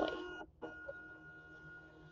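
Zebra direct thermal label printer auto-calibrating: its feed motor gives a faint steady whine while it advances the badge labels to find the gaps, with a short break about half a second in.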